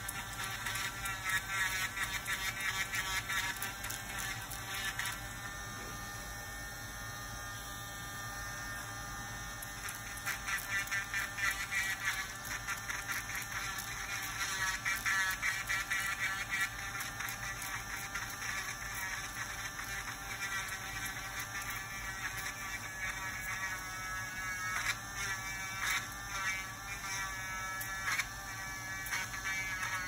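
Podiatry rotary nail drill with a small burr grinding down thickened, brittle toenails: a steady high whine whose pitch wavers as the burr bears on the nail, holding even for a few seconds near the quarter mark.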